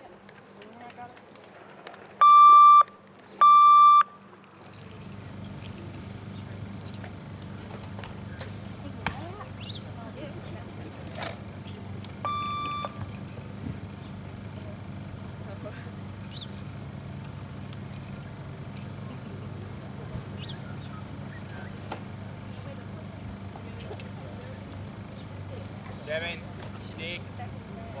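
Electronic archery timing signal: two loud beeps about a second apart, then about ten seconds later a single shorter, fainter beep. These are the signals that call the archers to the shooting line and then start the shooting. A steady low hum of background noise comes in after the first two beeps.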